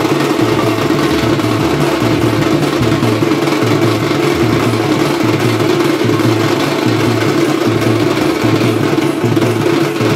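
Loud live drumming from a troupe of barrel drums played with sticks, a steady, dense, unbroken rhythm with a repeating low beat.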